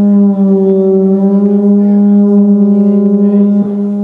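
Synthesizer holding one loud, sustained low droning note rich in overtones, with a slight flutter in it; a click near the end as the drone drops a little in level.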